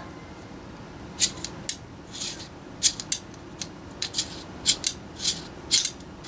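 Sharp metallic clicks of a stainless Ruger New Model Single Six revolver being handled with its loading gate open, as the cylinder and ejector rod are worked. There are about a dozen clicks, spaced irregularly, some in quick pairs.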